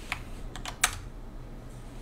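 A few separate keystrokes on a computer keyboard, the loudest just under a second in.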